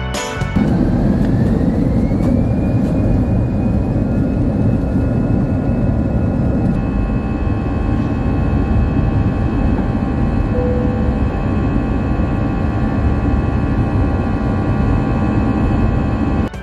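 Airbus A320 jet engine at climb thrust just after takeoff, heard inside the cabin beside the wing: a loud, steady rushing noise with a whine that rises in pitch over the first couple of seconds and then holds steady.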